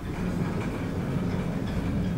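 Automatic sliding doors of a KONE MonoSpace elevator closing: the car and landing door panels run along their tracks with a steady rumble.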